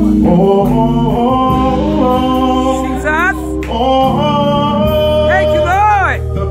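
A man singing gospel worship into a microphone, holding long notes and twice sliding quickly upward in a vocal run, over steady instrumental backing.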